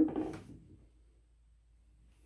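Brief laughter from a person that fades out about half a second in, followed by quiet room tone.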